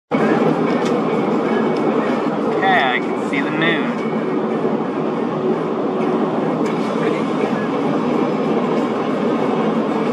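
Steady road and tyre noise inside a moving car's cabin, with a brief voice about three seconds in.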